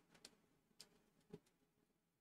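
Near silence broken by four faint, short clicks of a computer mouse.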